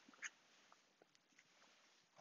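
Near silence: quiet room tone, with one faint brief sound about a quarter second in.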